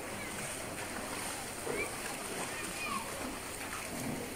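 Shallow river water running over stones, with cows splashing as they wade and drink in it.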